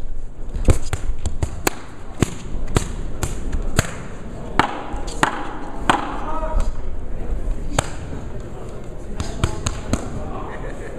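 Irregular sharp smacks and thuds of boxing punches landing, a dozen or so spread unevenly, over a steady murmur of arena voices.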